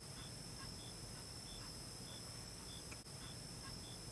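Faint night-time insect chorus in marsh grass: a steady high buzz with a short high chirp repeating evenly, a little less than twice a second.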